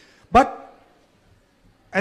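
Speech only: a man says one short word, "but", into a microphone.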